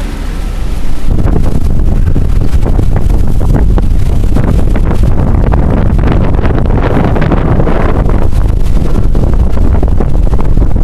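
Wind buffeting the microphone on a sailing yacht under way, over the rush of its wake along the hull. The buffeting jumps louder about a second in and stays loud.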